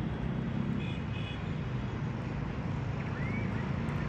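Steady low rumble of distant road traffic, with a few faint short high tones about a second in and a brief rising whistle a little after three seconds.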